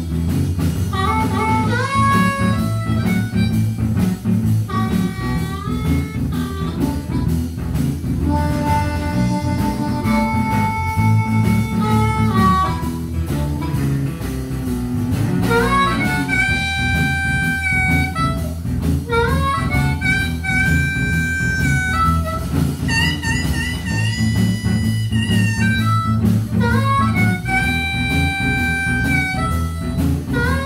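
Blues harmonica solo, the harp cupped against a vocal microphone, with long held notes that bend into and out of pitch. Electric guitar, bass guitar and drums accompany it.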